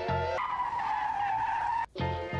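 Music with a steady beat stops about half a second in and gives way to a tyre-squeal sound effect: one long screech that sinks slightly in pitch, then cuts off abruptly near the end.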